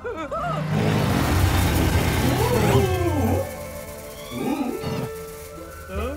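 Cartoon soundtrack: eerie music with a loud, low rumbling sound effect lasting about three seconds, over which a cartoon character gives short wavering cries.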